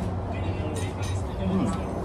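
Steady low motor hum, with a background voice briefly heard near the end.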